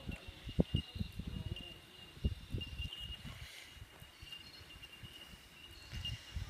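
Horse's hooves thudding on the sand footing of the arena, a run of dull beats through the first three seconds and fewer after, with insects chirring steadily at a high pitch.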